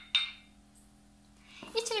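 A sharp clink of a small drinking glass against a hard surface just after the start, with a brief high ring as it dies away. Then a stretch of near quiet.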